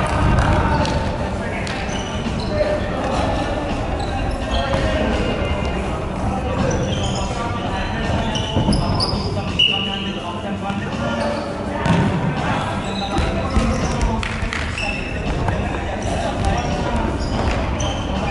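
Futsal being played on a hardwood gym floor in a large, echoing hall: the ball being kicked and bouncing in scattered thuds, short high squeaks of sneakers, and players calling out.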